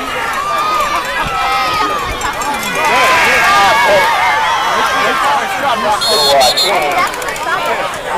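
Sideline spectators at a football game shouting and cheering through a running play, the yelling swelling about three seconds in. A short high whistle, the referee's whistle ending the play, cuts through about six seconds in.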